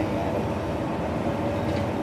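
Steady low background rumble with no distinct events, the sound of nearby traffic or machinery around an outdoor interview spot.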